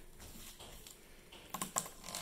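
Plastic zip-top bag rustling softly under hands as a sheet of paper is slid in and smoothed flat, with a few sharp crackles of the plastic about a second and a half in.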